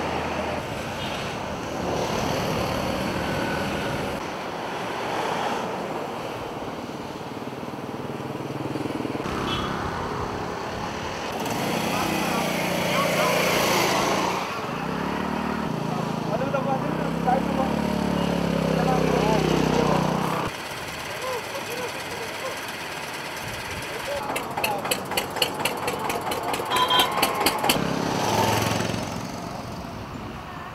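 Road traffic, with motorcycle and scooter engines running and passing. Midway, one engine's pitch rises and falls as it revs; people's voices mix in.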